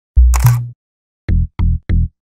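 Logo intro sting: a deep bass hit with a bright, noisy burst on top, then three short low pulses in quick succession, each starting with a click.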